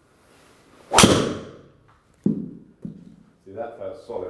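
Driver striking a golf ball off a tee: a brief swish of the downswing, then one loud, sharp crack with a short ring. The ball is struck about 10 mm toward the toe and 9 mm high on the face, which the players judge an effectively solid strike. Two lighter knocks follow about a second later.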